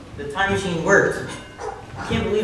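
A performer's voice on stage: one short cry lasting about a second, starting just after the beginning, which a listener may take for a dog-like bark.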